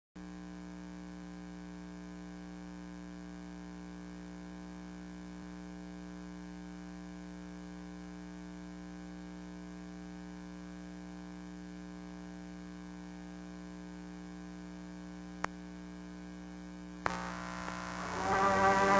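Steady electrical hum with a buzzy row of overtones from an archival film transfer, with a single sharp click about fifteen seconds in. Near the end a sudden pop brings in louder hiss and crackle as the soundtrack starts.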